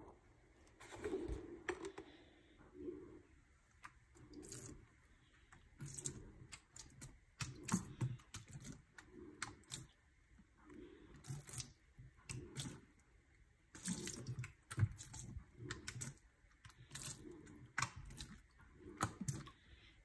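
Liquid bleach poured from a bottle in short, irregular spurts onto bundled fabric in a stainless steel sink, splashing and dripping faintly about once a second.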